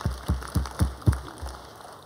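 Hands clapping in applause, an even run of about four claps a second that fades out near the end.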